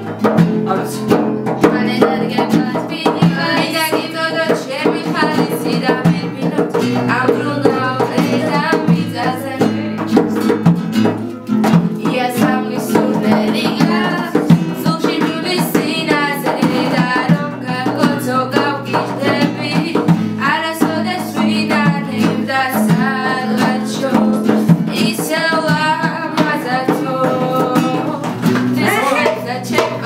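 A young woman singing a song to her own acoustic guitar accompaniment, the voice carrying the melody over steady rhythmic playing.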